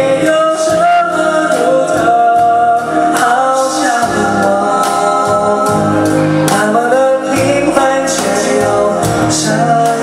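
Live music: a man singing a melody of held, gliding notes over instrumental accompaniment.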